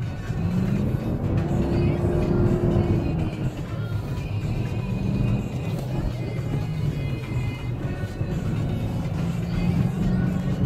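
Music playing inside the cabin of a four-wheel-drive vehicle over its engine and driving noise as it crosses desert sand dunes. The engine note rises and then falls once in the first few seconds.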